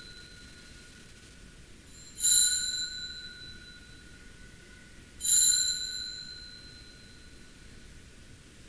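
Altar bell rung twice at the elevation of the chalice, marking the consecration. Each ring starts sharply and fades away over about two seconds, the first about two seconds in and the second about five seconds in, with the dying tail of an earlier ring at the start.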